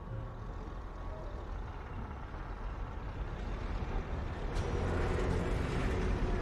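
A low, engine-like rumble of heavy machinery that grows louder and noisier over the last second or two.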